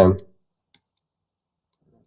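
A man's voice trails off at the end of a word, then near-quiet with a few faint, sparse clicks from handwriting being entered on a computer.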